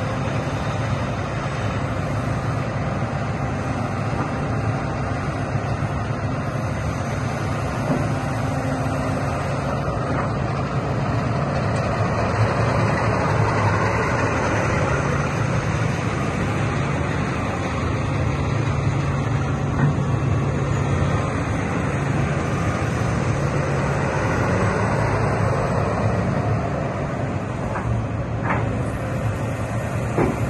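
Case CX330 crawler excavator's diesel engine running steadily under hydraulic load as the machine works its boom, arm and bucket and slews. The note swells a little now and then with the movements.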